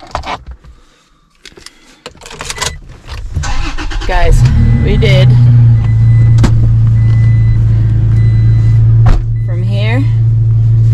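Pickup truck's engine starting about four seconds in and then idling steadily, heard from inside the cab, with a couple of sharp clicks.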